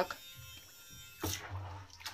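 Battery-powered robotic toy fish's small motor buzzing faintly, with a short splash about a second in as the toy goes into bathwater, after which the motor's low hum carries on.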